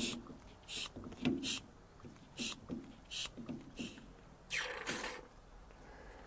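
Mityvac hand vacuum pump being squeezed repeatedly to draw old brake fluid out of a master cylinder reservoir through a tube: about six short hissing strokes, roughly two-thirds of a second apart, with a longer one about four and a half seconds in.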